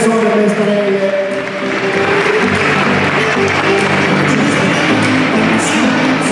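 Music playing over a crowd applauding and cheering, the applause filling in and growing from about two seconds in.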